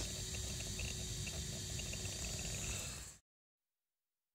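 Brushless-motor RC rock crawler pushing through long grass, heard as a steady mix of rustle, rumble and hiss with a faint steady whine, cut off abruptly about three seconds in.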